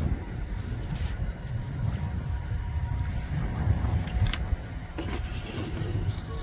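Wind rumbling on the microphone, with a few faint clicks and rustles from charge-lead connectors and a plastic bag being handled.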